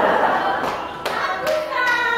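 Audience applauding, fading out about a second in, with music and voices coming back near the end.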